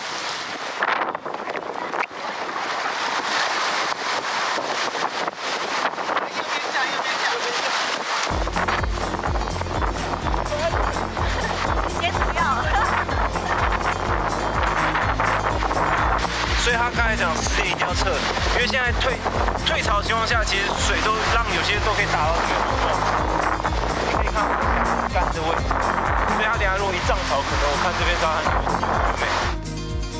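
Breaking surf and splashing water hiss for about eight seconds. Then background music with a steady bass beat comes in and carries on.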